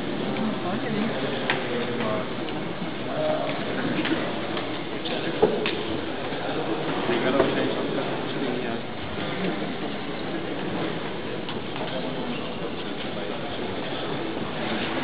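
Indistinct background chatter of several people talking, with a few sharp clicks; the loudest click comes about five and a half seconds in.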